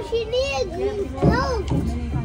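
Children's high voices chattering and calling out in a noisy fast-food restaurant, over a steady low background rumble.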